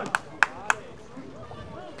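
Three sharp knocks in quick succession, about a quarter of a second apart, over a low background of faint voices.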